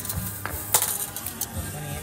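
Steel tape measure pulled out and laid against a wooden plyo box, its metal blade clicking and rattling, with one sharp click a little under a second in.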